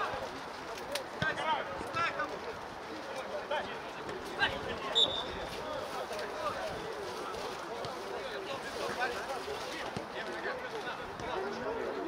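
Players shouting and calling to each other across an open football pitch, with a few sharp knocks of a ball being kicked and a short high tone about five seconds in.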